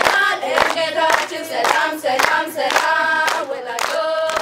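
A group of girls singing together and clapping their hands in time, about two claps a second.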